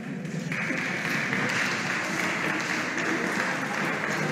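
Applause from many people, breaking out about half a second in and running steadily, right after the choir's last sung note.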